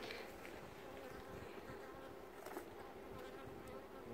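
Honeybees buzzing steadily and faintly around an open Langstroth hive, with a couple of light knocks as the wooden super is handled on top of it.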